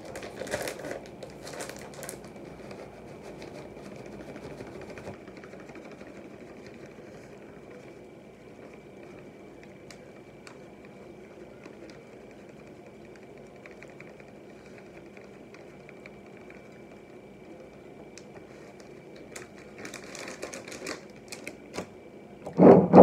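Plastic bag of shredded cheese crinkling as it is handled, opened and shaken out over a plate of nachos, in bursts of crinkles in the first two seconds and again near the end, over a steady faint hum.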